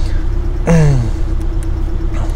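Porsche 718 Cayman S turbocharged flat-four idling steadily, heard from inside the cabin as a low, even hum.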